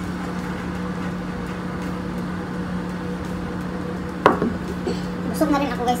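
A steady low hum in the room, with a single sharp knock about four seconds in, typical of a ceramic mug being set down on a tabletop.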